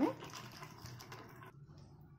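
Water pouring from a plastic bottle onto dry soya chunks in a steel bowl, a faint splashing patter that stops about one and a half seconds in.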